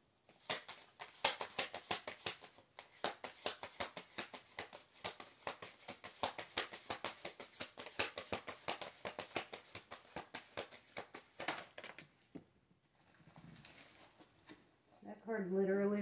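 A deck of tarot cards being shuffled by hand: a long run of rapid, soft card clicks that stops about twelve seconds in, followed by a brief faint rustle.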